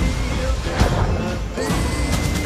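Movie trailer soundtrack: music over a heavy low rumble, with several crashing impact sound effects and a held high tone coming in near the end.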